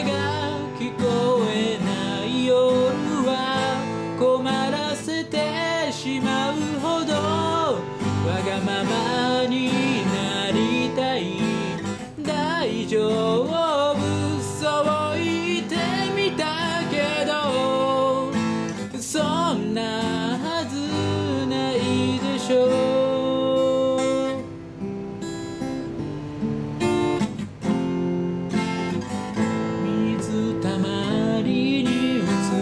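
Acoustic guitar playing chords with a voice singing a Japanese pop song over it. For a few seconds near the end the voice stops and the guitar plays alone, more quietly.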